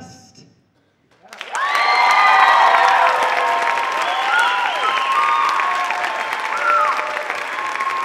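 The music dies away, then about a second in an audience breaks into loud applause with cheering and whooping voices over the clapping.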